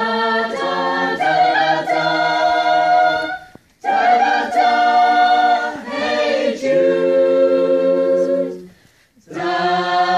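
Mixed amateur choir singing a cappella, held chords in long phrases, with a short break for breath about three and a half seconds in and again near the end.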